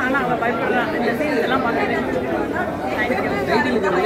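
Speech: a woman talking into a microphone, with crowd chatter from many people behind her.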